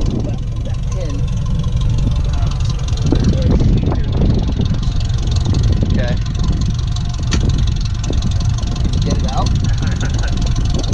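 A vehicle engine idling steadily under low, broken-up voices, with a sharp metal click about seven seconds in.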